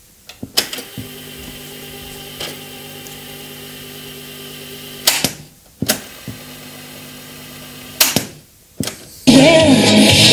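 Toshiba RT-6036 boombox cassette deck: piano-key buttons clicking down and released, with the tape mechanism running with a steady hum between presses, twice. Just before the end another key goes down and music starts playing from the deck.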